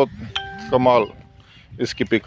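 A man talking, overlaid by a steady electronic ding-like tone that starts about a third of a second in and holds for about a second.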